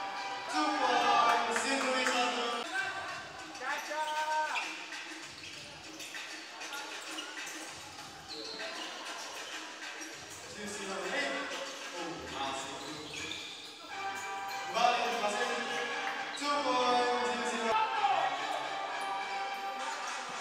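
Basketball dribbled and bouncing on a hardwood gym floor during play, with voices calling out in the hall.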